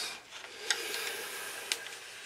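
Cardboard CD booklet rubbing against a clear plastic CD case as it is slid out: a steady rubbing with two light clicks, about a second apart.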